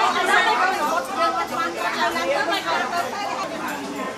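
Several people talking at once: overlapping close-up chatter.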